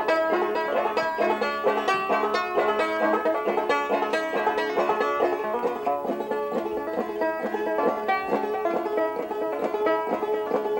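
Long-neck banjo played solo as an instrumental lead-in: a steady stream of quick picked notes with no singing.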